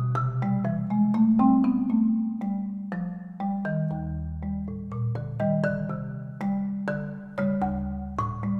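Solo marimba played with mallets: a quick line of struck notes, several a second, over low bass notes that ring on for a second or more.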